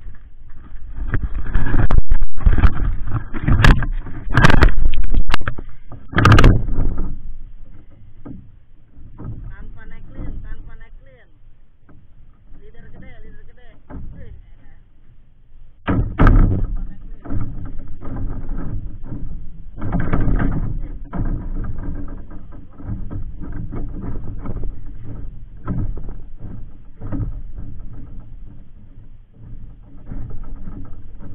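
Camera being handled and set down on a bamboo platform deck: loud rubbing and several sharp knocks in the first six seconds, then a quieter stretch. From about halfway on, a steady rush of wind on the microphone with light knocks and creaks from the bamboo deck.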